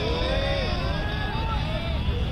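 Cricketers' voices calling out across an open field, several overlapping shouts with no clear words, over a steady low rumble.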